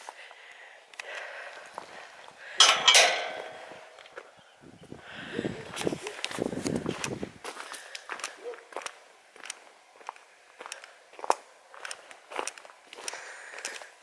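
Footsteps on a gravel track: scattered crunches and clicks, more regular in the second half, with one louder noise about two and a half seconds in.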